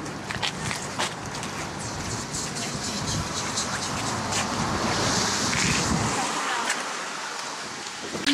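Wind rushing across the microphone in rain, with scattered sharp clicks; the low rumble drops away about six seconds in.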